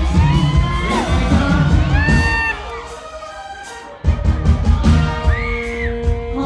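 Live band music played loud over a PA, with heavy bass and drums, a woman singing and the crowd whooping. The bass and drums drop out about two and a half seconds in and the full band comes back in at about four seconds.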